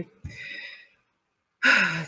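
A woman's breathing: a short sigh, then a sharp intake of breath near the end, just before she speaks again.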